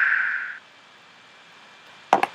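Steady noise of a fighter jet's cockpit intercom audio, fading and then cutting off about half a second in, leaving a faint hiss.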